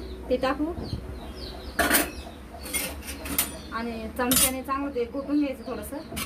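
Stainless-steel utensils clinking and scraping against a steel cooking pot as an ingredient is tipped in and mixed, with a few sharp knocks between about two and four and a half seconds in.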